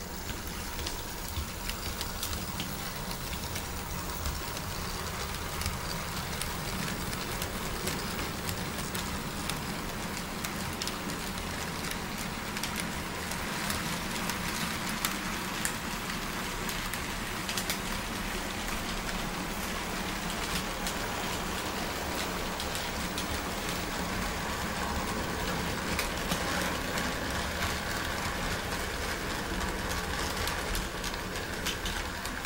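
Model train running: two Piko BR 189 electric locomotives hauling heavily loaded freight wagons, a steady whirr of motors and rolling wheels with a continuous patter of small clicks from the wheels on the track.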